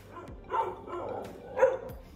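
Dog barking twice in play, about a second apart, the second bark louder.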